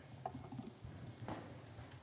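Faint typing on a laptop keyboard: a scatter of soft key clicks over the low hum of a quiet meeting room.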